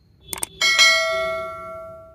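Subscribe-button sound effect: a quick double mouse click, then a single bright bell ding that rings out and fades over about a second and a half.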